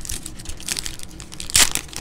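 A foil trading-card pack wrapper is torn open and crinkled by hand, in a run of crackles, with the loudest rip about one and a half seconds in.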